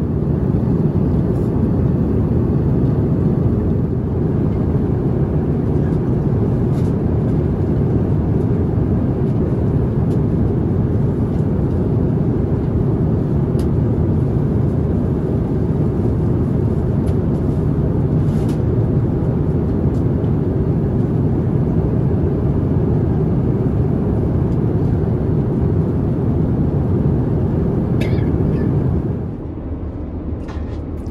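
Airbus A350-900 economy cabin noise in cruise: a steady, loud low rush of airflow and Rolls-Royce Trent XWB engine noise, with a few faint clicks. It drops slightly in level near the end.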